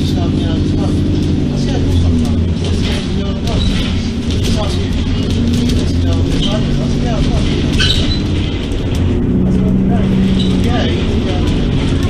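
London bus engine running as the bus drives, heard from inside the passenger saloon, its low drone shifting in pitch as the bus speeds up and slows. Passengers' voices are heard in the background.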